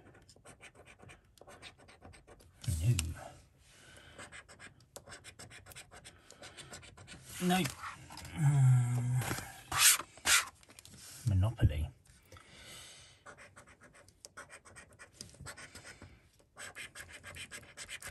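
A coin scraping the silver coating off a paper scratchcard, in runs of rapid short strokes with pauses between. A louder rustle of card near the middle, as one card is put aside and the next is picked up.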